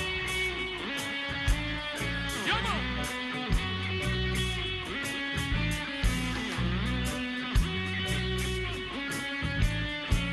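A live reggae band playing an instrumental passage: electric guitar over bass guitar, with a steady beat. One note slides in pitch about two and a half seconds in.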